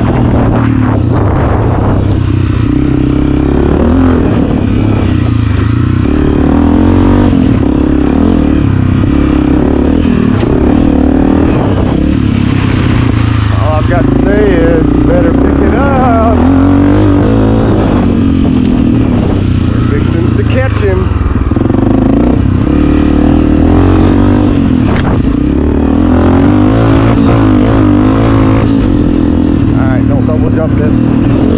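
Honda CRF250F dirt bike's single-cylinder four-stroke engine running hard on a dirt track, close to the handlebars. Its pitch rises and falls repeatedly as the rider throttles and shifts.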